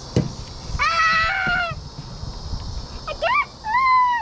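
A small child's high-pitched voice: one drawn-out squeal about a second in, then two shorter squeals close together near the end.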